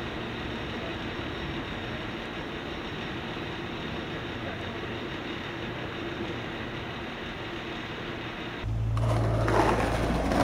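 Steady city-street hum of traffic. About nine seconds in, this gives way to a skateboard's wheels rolling loudly over a concrete sidewalk.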